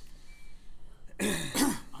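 A man coughs twice in quick succession, starting a little over a second in.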